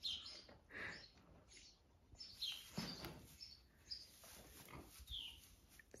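Faint sounds of a newborn calf nursing at its mother's teat, with a few soft high chirps.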